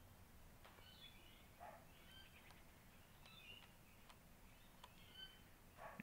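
Near silence: faint short bird chirps come and go in the background, with a few faint clicks from the keys of a Sharp EL-8131 ELSI-MATE calculator being pressed.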